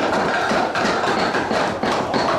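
Several knives chopping and mincing raw meat, a fast, dense clatter of many overlapping strokes.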